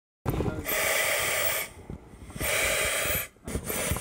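A person breathing heavily through a hazmat suit's air mask: two long, hissing breaths of about a second each, then a shorter one near the end.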